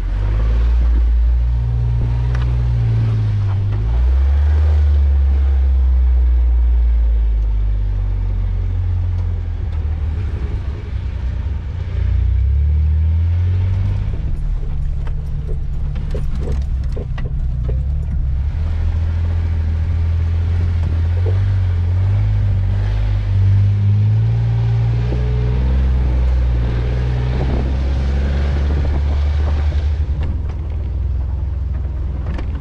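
Jeep Wrangler JK engine running at low speed on a rough dirt trail, its low rumble rising and falling with the throttle. A cluster of short knocks and rattles comes about halfway through.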